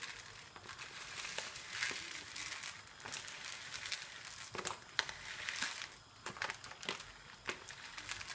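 Arborio rice being poured bit by bit from its bag into a plastic tub: dry grains trickling in uneven spurts, with the bag crinkling and a few sharper ticks of grains hitting the tub.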